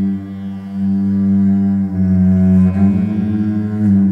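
Cello bowed in long sustained notes over a steady low drone, with the higher notes shifting about two seconds in.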